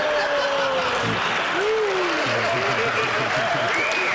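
Audience applauding in a large hall, steady throughout, with a couple of voices calling out over it, marking a correct answer in a quiz.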